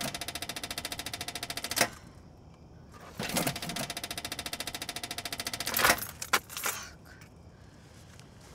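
A car's ignition key turned twice on a dead battery: each time the starter solenoid chatters in rapid, even clicking for about two and a half seconds, with a steady tone beneath, and the engine does not crank. A couple of single clicks follow as the key is let go.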